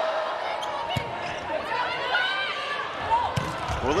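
Steady arena crowd noise during a volleyball rally. A sharp smack of a hand on the ball comes about a second in, and sneakers squeak on the court floor a little after two seconds.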